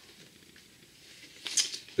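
Cardboard LP album jacket being handled: faint room tone, then a brief paper rustle and scrape near the end.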